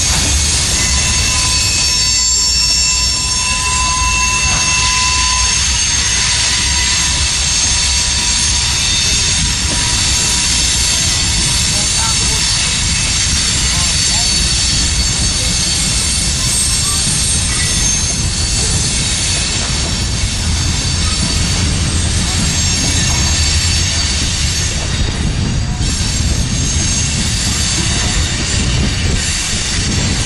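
Freight cars of a passing freight train, covered hoppers and boxcars, rolling steadily by on the rails with a continuous loud wheel-and-rail rumble. Thin high-pitched wheel squeal rings over it, strongest in the first half.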